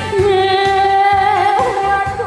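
A woman singing a Korean trot song into a microphone, holding one long note with vibrato that turns briefly about one and a half seconds in, over amplified accompaniment with a steady beat.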